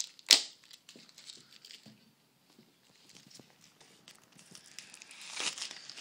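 Packaging of an iPhone 4 retail box crinkling and rustling as the box is handled. There is one sharp snap just after the start, then faint crackles, and the rustling grows louder near the end.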